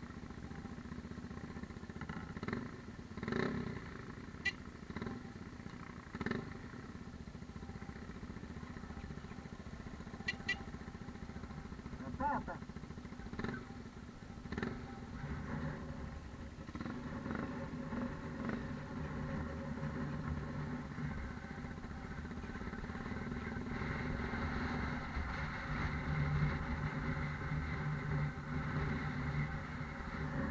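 Trail motorcycle engine running steadily at low revs, with a few sharp clicks in the first half; it grows louder in the second half.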